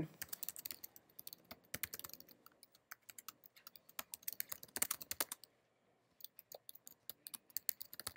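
Typing on a computer keyboard: quick runs of soft key clicks, with a pause of about a second a little past halfway before the keystrokes resume.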